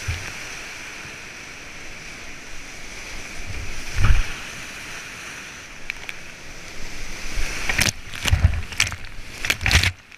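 Whitewater rapids rushing around a kayak, with heavy thuds and splashes as waves break over the bow and spray hits the camera: one about four seconds in and a run of them in the last two seconds.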